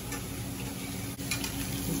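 Steady kitchen background noise: a low hum under an even hiss, with a few faint light clicks.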